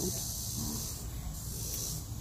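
Steady high-pitched insect drone from the garden, over a low rumble of wind and phone handling on the microphone.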